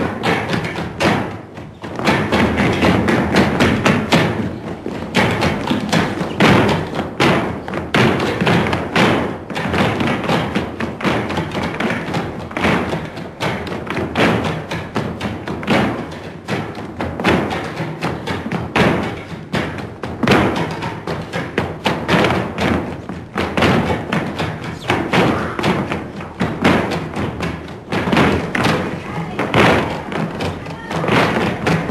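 Flamenco footwork: a troupe of dancers stamping heeled shoes on the floor in dense, rhythmic volleys, with flamenco music and voices. The stamping thins briefly about a second in, then runs thick and loud.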